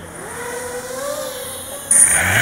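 Quadcopter's brushless motors (SunnySky 2204 2200kV) spinning 6040 propellers at low throttle, heard through the onboard camera as a whine whose pitch wavers and slowly rises. Just before the end it gets suddenly louder as throttle is added for takeoff.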